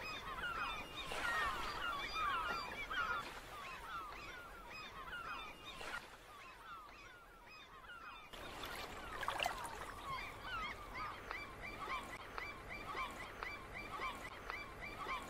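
A flock of birds calling over one another, with many short, quick chirping calls. Near the end one bird repeats a short, higher note about three times a second.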